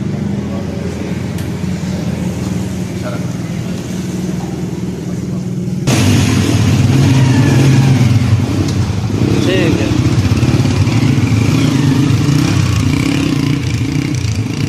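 Small motorcycle engine running steadily at idle, then suddenly louder and rougher about six seconds in, revving as the bike rides off.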